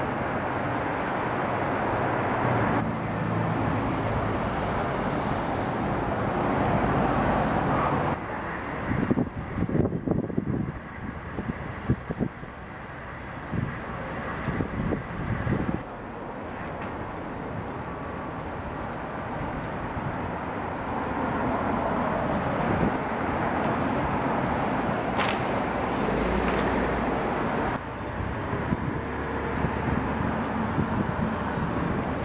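City street traffic noise: cars running and passing on the road. The ambience changes abruptly several times, and there is a stretch of irregular knocks and rustling in the middle.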